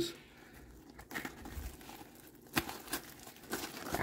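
Nylon fabric and webbing of a placard's magazine pouches rustling and scuffing as hands open and handle them, with a few faint scattered knocks.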